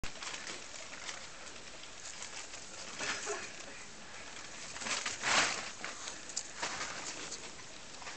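Rustling and scuffling on grass as a small Tibetan spaniel and a Neva Masquerade cat wrestle, in irregular bursts, loudest about five seconds in.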